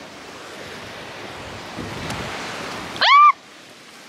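Wind and surf noise that swells over the first two to three seconds. About three seconds in comes a woman's short cry rising in pitch, the loudest sound.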